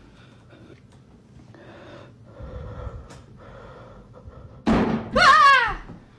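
A sudden loud bang near the end, followed at once by a woman's high-pitched startled scream that falls in pitch and lasts about half a second.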